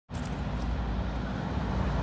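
Steady low rumble and hiss of distant road traffic.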